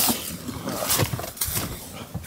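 Rustling and shuffling with a few soft knocks: someone moving about at an open car door while getting back into the car.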